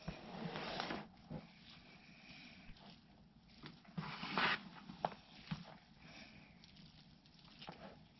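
Hands digging and crumbling through worm castings in a plastic barrel bin: soft rustling in a few short bursts, about a second in and again around four seconds in, with a few small clicks.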